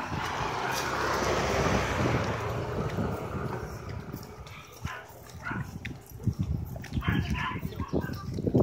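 A dog barking several times in short bursts, over a rushing noise that fills the first few seconds and then fades.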